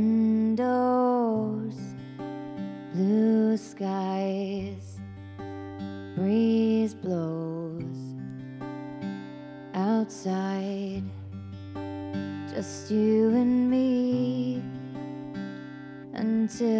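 Acoustic guitar playing a slow instrumental intro, chords strummed about every three seconds and left to ring. Over them runs a wordless vocal line that glides in pitch.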